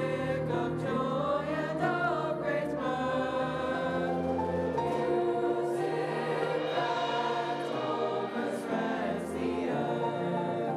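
School choir singing together with a full orchestra of strings and winds, at a steady level with long held chords.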